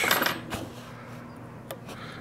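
Light metallic ticks and clinks of a fly-tying whip finisher as a four-turn whip finish is made on the hook. There are a few small ticks over a quiet background.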